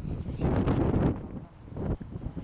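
Wind buffeting the microphone: a rough low rumble that swells and fades, loudest in the first half and rising again just before the end.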